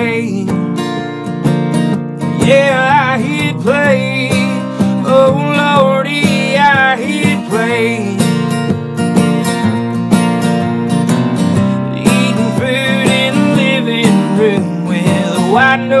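Acoustic guitar strummed steadily, with a man singing over it in drawn-out phrases.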